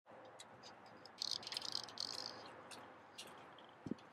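Faint outdoor ambience: scattered faint high ticks, a denser run of them between about one and two seconds in, over a faint steady hum, with a soft low thump near the end.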